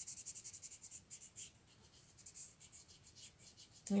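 Felt-tip marker scrubbing on paper as a shape is coloured in, in quick back-and-forth strokes that break up into sparser, scattered strokes after about a second.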